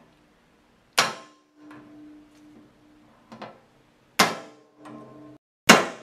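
Claw hammer striking a center punch against a sheet-metal enclosure, center-punching the mounting-hole marks before drilling. There are three sharp strikes, each followed by a short ring from the metal box, with a few lighter taps between.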